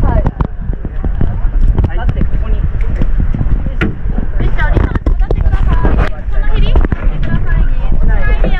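Several people talking over a steady low rumble, with scattered knocks and clicks of scuba gear being handled.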